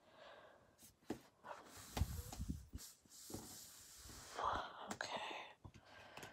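A paper sticker strip being handled and smoothed down onto a planner page: scattered light taps, a few soft thumps about two seconds in, then rubbing and rustling of fingers over paper.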